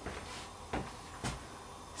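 Three soft footsteps on a wooden floor, spaced about half a second apart.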